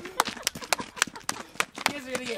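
Hands clapping: a quick, uneven run of sharp claps, several a second, from two people clapping together.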